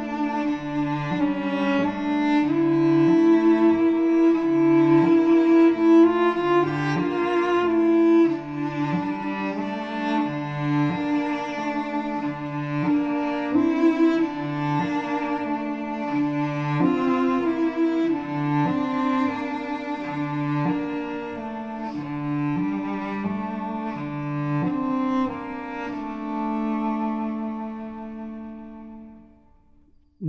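Two cellos playing a sparse, slow duet: one holds long notes while the other moves beneath in shorter lower notes, about one a second. The music fades out near the end.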